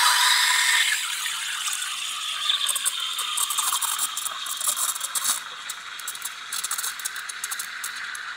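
La Marzocco Strada AV's cool-touch steam wand hissing in a stainless steel pitcher of milk. It is loudest in the first second as the steam opens, then settles to a slightly quieter hiss with rapid crackling as air is drawn in and the milk is frothed.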